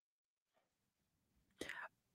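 Near silence, with a brief faint sound from a man's voice near the end, just before he speaks.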